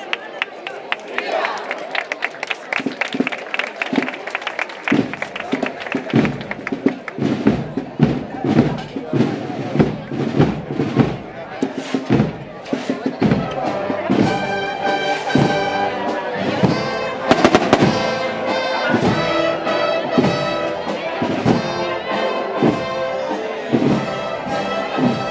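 Rapid run of sharp cracks and bangs over crowd voices, and about halfway through a brass band starts playing a march, with the bangs going on under the music.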